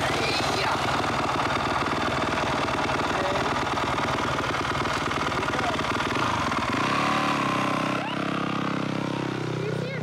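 Yamaha YZ250F four-stroke single-cylinder motocross engine running at low revs as the bike is ridden slowly, its note changing to a steadier hum about seven seconds in. A young child's voice squeals over it.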